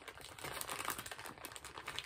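Light, irregular clicking and rustling of small craft supplies being handled on a table as a plastic thread spool is picked up.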